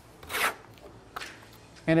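A trowel scraping thick Backstop NT Texture coating across wall sheathing: one short scraping stroke about half a second in, then a faint click, before a voice comes in near the end.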